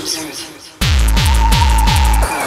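Hardcore techno DJ mix: the pounding distorted kick drum, about two beats a second, drops out for a short fading break, then slams back in just under a second in, with a high held synth note joining over it.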